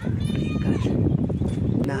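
People's voices, with a short high-pitched call about half a second in.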